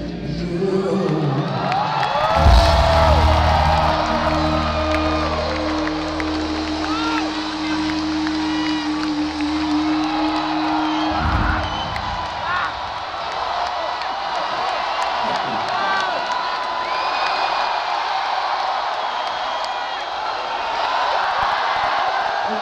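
Live rock band holding a final chord that cuts off about eleven seconds in, as the song ends. An arena crowd cheers and whoops throughout and keeps cheering after the band stops.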